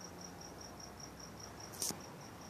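Crickets chirping in an even, steady pulse, about six high chirps a second. A single brief, sharp click about three-quarters of the way through is the loudest sound.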